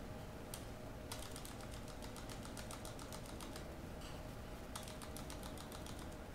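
Computer keyboard keys tapped: a single keystroke, then a long run of rapid, evenly spaced taps and a shorter run near the end, as typed text in a terminal command is deleted.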